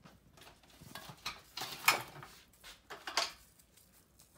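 Scattered light clicks and knocks of small hard objects handled in a room. The sharpest comes about two seconds in, and another follows a little after three seconds.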